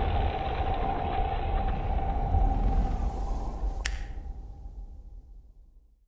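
Trailer sound design: a low rumbling drone with a steady held tone, broken by a single sharp hit about four seconds in. It then fades out over the last two seconds.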